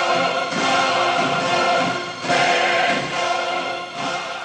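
Orchestral trailer music with a choir singing held chords, swelling afresh about half a second and again about two seconds in, and beginning to fade near the end.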